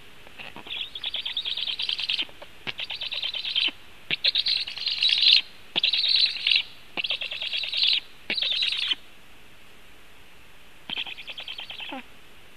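Young black storks' begging calls at the nest: high-pitched, rapidly pulsed calls in about seven bursts of half a second to a second each, then a pause and one more burst near the end.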